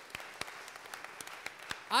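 Light, scattered audience applause: irregular individual hand claps over a faint wash of clapping.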